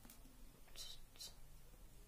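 Near silence in a small room, with a woman's faint whispering: two soft hissy sounds about a second in.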